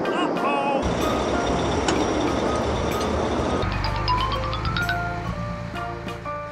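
Cartoon soundtrack: a rushing noise for the first half, then a low vehicle-like rumble under background music with a rising run of notes.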